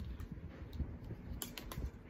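Light clicks and low handling noise of clothes hangers being moved about: a plastic clip hanger holding jeans and a velvet hanger brought up beside it. The clicks come in a small cluster near the end.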